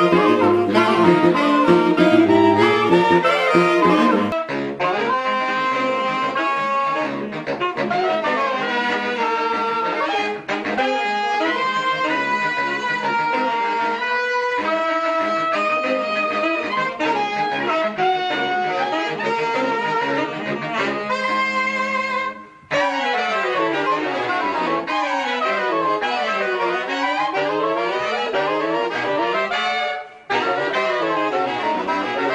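Saxophone quartet playing avant-garde jazz. It opens with a low, pulsing riff, then changes abruptly to overlapping held lines. After a brief break near the end, the voices slide up and down in pitch against one another.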